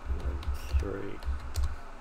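Typing on a computer keyboard: a short run of keystrokes over about a second and a half, each with a dull low thump.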